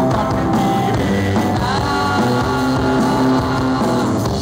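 Rock band playing live: electric guitars and drums at full volume, with a note sliding upward about one and a half seconds in.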